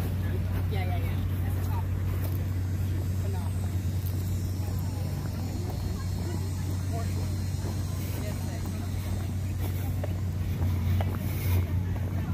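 Wind rumbling steadily on the phone's microphone, with faint voices in the distance.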